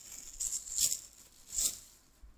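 Thin plastic wrapping crinkling as it is handled, in three short bursts.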